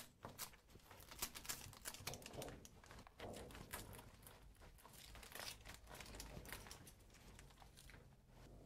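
Faint, scattered crinkling and small clicks of a clear plastic roller blind and its adhesive strip being handled and pressed against a window frame.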